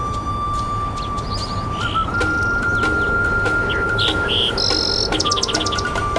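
Relaxation music: a Native American flute holds one long note, steps up to a higher held note about two seconds in, and drops back near the end. Recorded birdsong chirps and trills sound above it, busiest in the last second or so.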